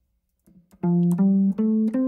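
Guitar playing a four-note melodic structure as single notes: a pause, then four clean notes climbing upward about three a second, the last one ringing on. The steps are whole steps and then a third.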